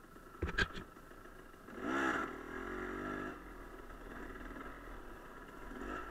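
Enduro dirt bike engine revving up and back down about two seconds in, then running at a low steady note as the bike rolls slowly over gravel. A few sharp knocks come in under a second in.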